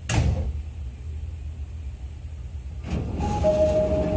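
Inside a JR East E501 series train at a station stop, with a steady low hum under everything: a short, sharp, loud sound at the start, then near the end the sliding passenger doors begin to close with a rush of noise and a steady two-tone door chime.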